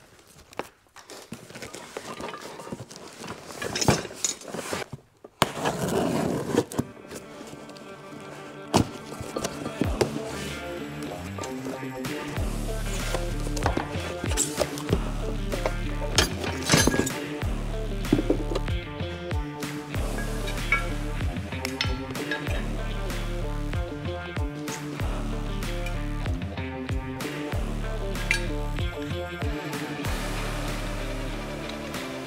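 Clinks and knocks of steel parts being unpacked from cardboard boxes, the brackets and caster parts of a wheeled mobile base for woodworking machines. Background music comes in about six seconds in, with a steady repeating bass beat from about twelve seconds, over the handling sounds.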